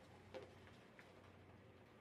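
Near silence with a low steady hum, broken by a short click about a third of a second in and a fainter one a second in.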